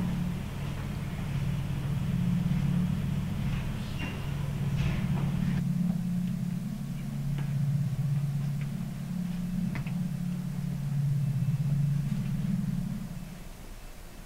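Low, droning rumble from a horror soundtrack, swelling and easing in slow waves and fading out about a second before the end, with a few faint clicks over it.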